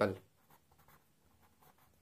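A pen writing a word by hand on paper: faint, short scratching strokes, one after another.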